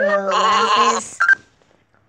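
A cartoon sheep's bleat sound effect: one wavering bleat about a second long, followed by a brief high note.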